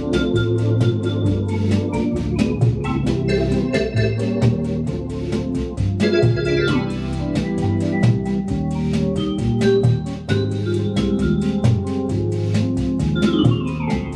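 Hammond organ playing a bossa nova arrangement through Leslie speakers. Sustained chords sit over pedal bass notes and a steady percussion beat of about five ticks a second. Quick descending runs come about six seconds in and again near the end.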